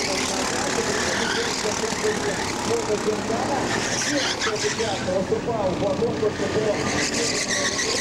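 Go-kart engines running and revving as karts drive through the corners of the track, with a voice heard over them.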